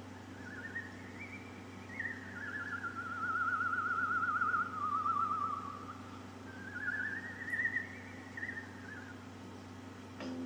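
A lone high, whistle-like tune with a fast vibrato, gliding slowly up, down and up again. It plays from a television's speaker over a faint steady hum.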